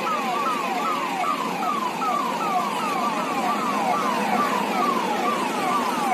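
Police convoy vehicles' sirens wailing in rapid falling sweeps, about three a second, over the steady noise of passing vehicles.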